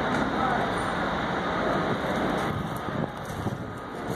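Steady background noise of an industrial construction site, an even rumble and hiss as from distant engines and machinery, easing somewhat about two and a half seconds in.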